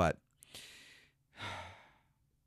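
A man breathing close to a studio microphone during a pause in his talk: a soft breath about half a second in, then a louder, longer sigh in the second half.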